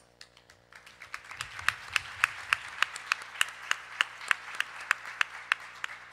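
Audience applauding, building up about a second in, with one nearby pair of hands clapping sharply and evenly at about three claps a second above the general applause.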